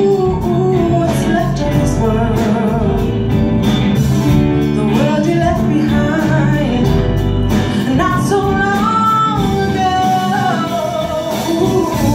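Live soul band playing, with a woman singing lead over keyboard, electric guitar, bass and drums.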